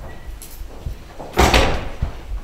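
A door thuds once about one and a half seconds in, with a short echo.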